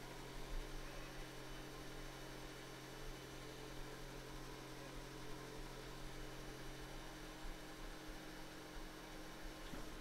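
Faint, steady mains hum with a light hiss underneath.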